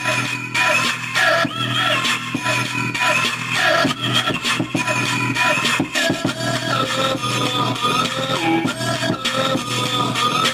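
Music played from a phone through a homemade TDA2003 chip amplifier into an old loudspeaker, running steadily at a fairly loud level.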